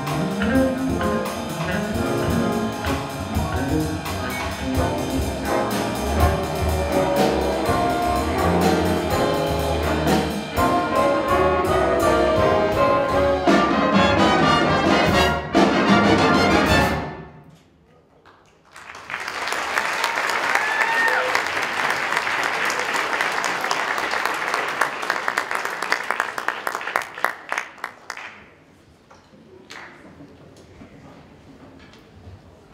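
Student jazz big band (saxophones, trumpets, trombones, piano, guitar and drums) playing the closing bars of a tune and cutting off together on a final chord about 17 seconds in. After a brief pause, the audience applauds for about ten seconds, the clapping thinning out near the end.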